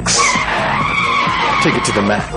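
Sound effect from a TV drinks advert: a sharp whoosh, then one long drawn-out tone that rises slightly and falls away.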